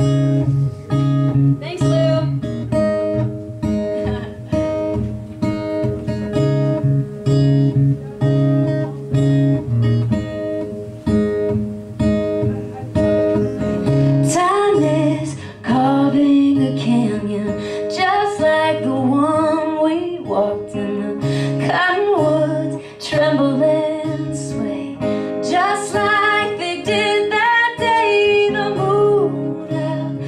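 Live acoustic guitar opening a folk song with a steady, repeating picked chord pattern. About halfway through, a higher melody line with bends and slides comes in over it.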